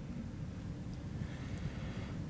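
Steady low rumble of room background noise with faint hiss.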